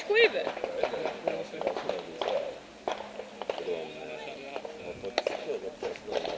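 Chatter of several people talking in the background, with a few short clicks and one sharper click about five seconds in.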